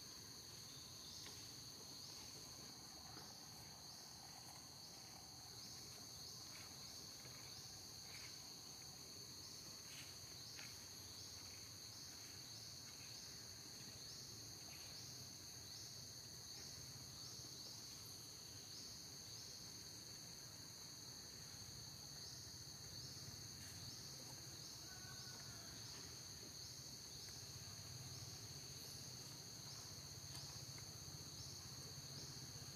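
Faint, steady high-pitched chirring of insects, with a regular pulse a little faster than once a second, over low background hum.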